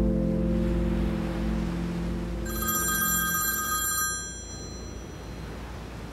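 A phone rings once, a short burst of bright steady tones, starting about two and a half seconds in and stopping about a second and a half later. Under it the song's last sustained chord fades out, leaving a low hiss.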